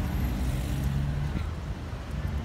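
Road traffic noise: a steady low rumble of car engines, with a faint steady hum in the first second and a half.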